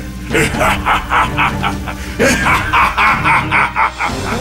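A cartoon villain's gloating laugh in two long runs of rapid 'ha-ha-ha' bursts, about five a second, over background music.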